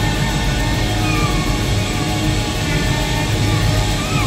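A live rock band playing loud, dense music, with drums, guitar, keyboard, saxophone and violin. Sliding high notes run over the band.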